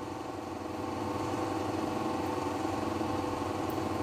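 A steady mechanical hum of a motor running.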